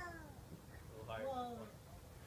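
Two drawn-out wordless vocal calls: the first slides down in pitch right at the start, the second is lower and lasts about half a second, about a second in.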